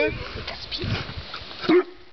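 A Saint Bernard giving one short vocal sound near the end, amid people talking.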